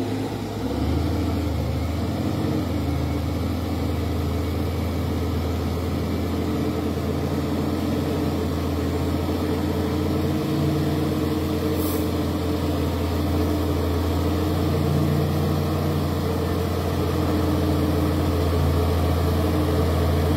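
Heavy diesel engine of a Volvo truck hauling an excavator on a lowbed trailer, running as a steady low drone under load and growing slightly louder toward the end. A brief high hiss sounds about halfway through.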